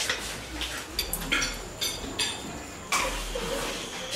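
A few light clicks and clinks at irregular intervals, over a low room rumble.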